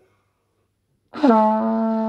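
Valved brass horn, played by a beginner practising, sounding one long held note. The note starts abruptly about a second in and holds steady in pitch.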